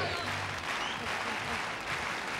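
Large stadium crowd applauding, a steady even wash of clapping and crowd noise.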